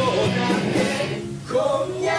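Live rock band playing, with electric guitar, bass, drums and keyboard behind a male lead singer. Just past a second in the music drops away briefly, then the band comes back in together.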